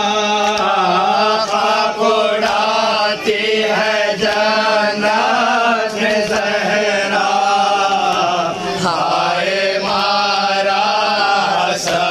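Shia noha (mourning lament) sung by a male reciter through a microphone and PA, with the men around him chanting along. Sharp chest-beating (matam) slaps come through now and then.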